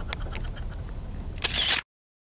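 Low rumble of a car with a quick run of faint clicks that fades out within the first second. About one and a half seconds in comes a loud brief rustle, then the sound cuts off to dead silence.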